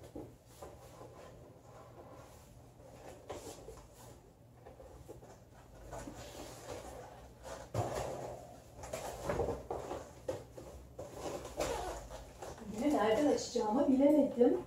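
Long cardboard box being handled and laid down on a table: scraping, rustling and a few dull knocks, busiest from about six to eleven seconds in.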